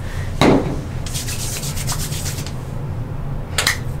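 Oiled palms rubbing together to spread hair oil: a soft contact sound as the hands meet, then a swishing rub for about a second and a half, and a brief tap near the end.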